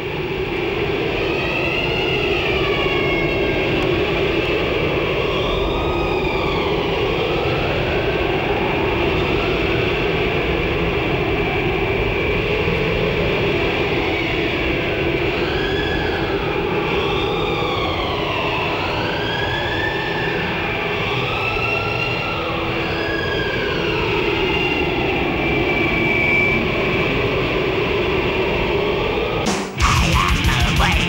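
Dark ambient intro to a heavy metal track: a dense, steady rumble with tones sliding up and down in slow arcs over it. Just before the end it cuts off sharply and distorted heavy metal music begins.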